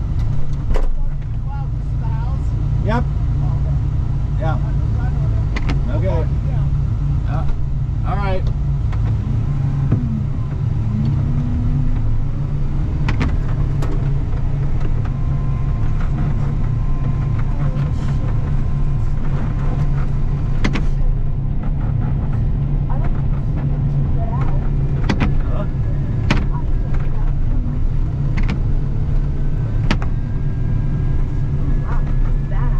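The engine of a snow plow machine running steadily as it pushes slushy snow, heard from inside the cab as a heavy low rumble. Scattered sharp clicks and knocks sound over it.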